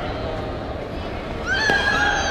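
A karateka's high-pitched kiai shout about a second and a half in, rising sharply and then held, as the two female fighters close in, with a short sharp click inside it. Sports-hall murmur underneath.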